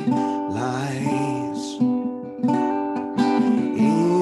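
A man singing a slow, simple melody, accompanied by a strummed ukulele.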